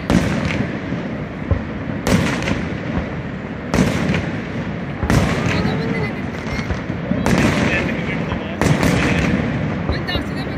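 Aerial fireworks shells bursting overhead, about six loud booms a second or two apart.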